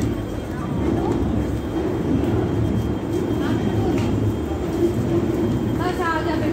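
Steady low rumble of heavy vehicles in a busy transit station, with faint voices of people around.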